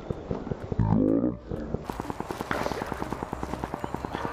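Fishing reel clicking rapidly and evenly while a hooked bass is fought from the bank, with a short shout about a second in.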